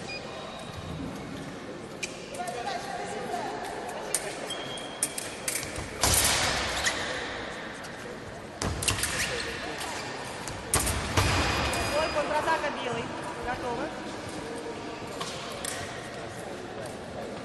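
Fencing bout in a large echoing hall: fencers' feet thudding and sliding on the piste and blades clashing. The loudest sharp hits come about six and eleven seconds in and ring on in the hall, with short cries in between.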